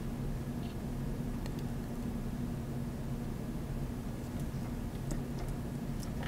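Steady low electrical hum and hiss of a home recording setup, with a few faint clicks from computer mouse buttons and keys.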